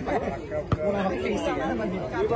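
Onlookers chattering, several men's voices overlapping, with one sharp knock about three quarters of a second in.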